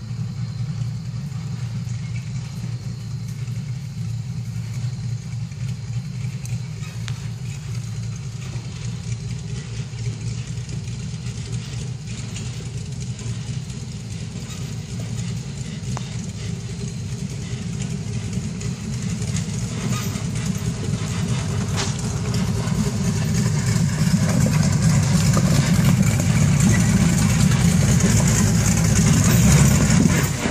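Off-road buggy's engine running steadily as the buggy climbs a steep rocky hill trail, getting louder over the second half as it comes closer.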